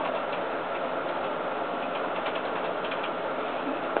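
A plastic action figure being handled close to the microphone, giving a few faint small clicks over a steady background hiss.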